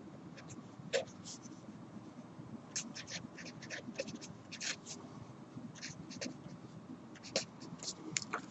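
Marker pen writing on paper: short, faint scratching strokes at irregular intervals as symbols of an equation are written out.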